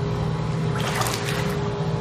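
A bucket of ice water poured over a person, splashing in a short rush about a second in, over a steady low hum.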